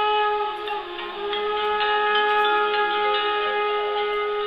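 Instrumental song intro: a wind instrument holds one long steady note over a quieter accompaniment.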